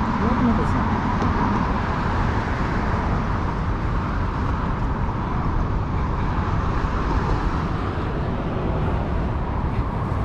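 Steady road traffic noise from a busy multi-lane highway below, cars passing without a break. A voice is briefly heard about a second in.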